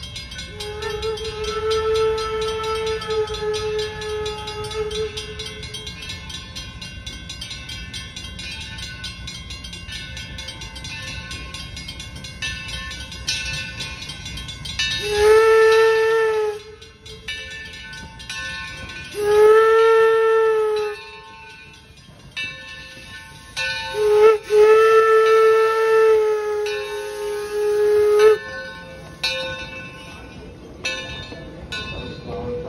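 Steam whistle of the 0-6-4T tank locomotive Torch Lake blowing as the engine approaches. There is a fainter blast early on, then three loud blasts: the first two under two seconds each and the last about four seconds long.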